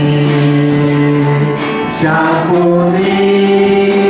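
Mandarin Christian worship song: several voices sing together in two long held notes, with a faint regular tick from the accompaniment.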